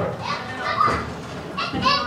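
Children's voices: excited chatter and calls, with other talk mixed in, in a small enclosed space.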